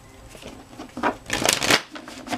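A tarot deck being shuffled by hand: quiet at first, then a quick dense run of card flicks about a second in, which is the loudest part.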